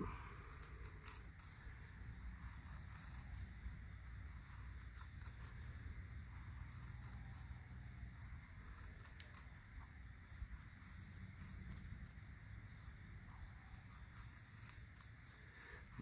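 Faint scraping of a Boker Plus Bushcraft Kormoran knife shaving thin curls off a stick of soft wood to make a feather stick, with scattered light clicks.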